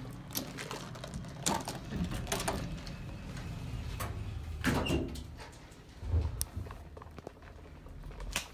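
Sliding car doors of a 1972 Otis traction elevator closing after a floor button is pressed, with scattered clicks and knocks and a low rumble as they shut.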